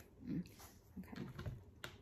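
A tarot deck being handled at a table: a soft thump near the start, then a scatter of light taps and clicks as the cards are squared and laid down.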